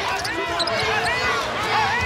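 Basketball sneakers squeaking again and again on a hardwood court, with the knock of a basketball being dribbled.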